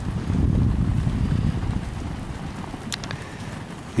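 Wind buffeting the microphone: a low rumble, strongest in the first two seconds and then easing off, with a couple of faint clicks about three seconds in.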